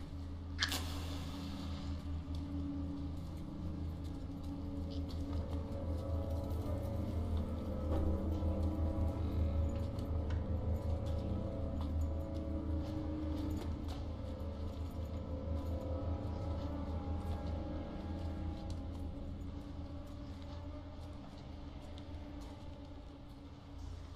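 Low, sustained suspense-score drone of held deep tones that swells in the middle and slowly fades. A single sharp click sounds about half a second in.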